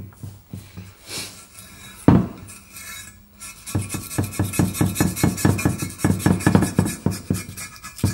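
Old RTV silicone gasket being scraped off the flange of a stamped-steel differential cover: after a sharp knock about two seconds in, a fast run of scraping strokes, about ten a second, fills the second half.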